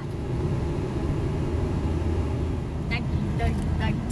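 Steady low rumble of a car driving, heard inside the cabin: engine and road noise.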